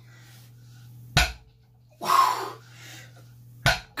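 A man's short, forceful exhalations and grunts of effort during barbell deadlift reps, with sharp short sounds about a second in and again near the end. A steady low hum runs underneath.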